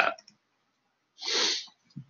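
A single short, forceful burst of breath noise from the presenter at the microphone, about half a second long, a little over a second in, followed by a brief low knock at the very end.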